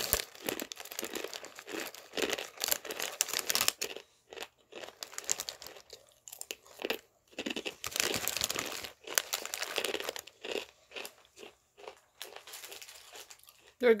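Crunchy fried corn sticks (Churritos) being chewed close to the microphone. The crunching comes in irregular clusters with short quiet gaps between them.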